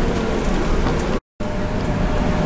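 Steady engine and road noise of a coach, heard from inside the passenger cabin while it drives. The sound cuts out completely for a moment just over a second in.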